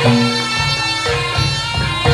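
Javanese gamelan music accompanying a jaranan dance: sustained, ringing metal-keyed notes over drum beats.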